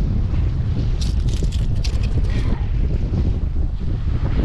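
Wind buffeting the microphone with a steady low rumble. A short run of sharp clicks and rattles comes about a second in and lasts a little over a second.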